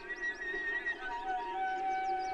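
Solo cello improvisation in high, flute-like held notes that step to a lower pitch about a second in, with quick wavering figures above them.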